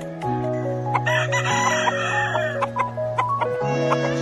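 Gamecock rooster crowing once, a single harsh call of about a second and a half starting about a second in, over background music with a steady bass line.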